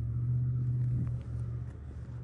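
Low, steady rumble of a motor vehicle, loudest in the first second and fading toward the end.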